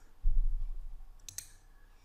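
Computer keyboard being used at a desk: a dull low thump about a quarter second in, then two sharp clicks a little past the middle.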